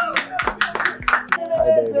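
Hand clapping in a quick, even rhythm of about six claps a second, with excited cheering voices; the clapping stops about one and a half seconds in.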